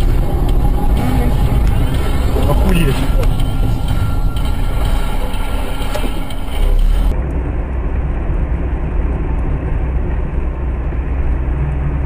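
Car cabin noise heard from inside a moving car: steady engine and road rumble in city traffic. About seven seconds in the sound turns duller, losing its high end, and the rumble carries on.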